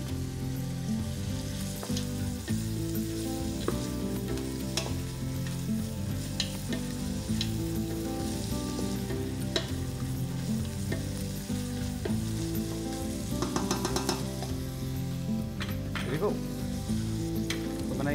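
Chopped onion, garlic and ginger sizzling in hot oil in a stainless steel pot while a wooden spatula stirs, with occasional sharp knocks of the spatula against the pot. Steady low tones of soft background music run underneath.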